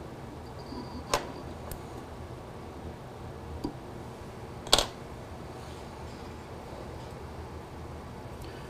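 Quiet, steady room hum with a few small, sharp clicks from fly-tying tools being handled at the vise, the loudest a little under five seconds in.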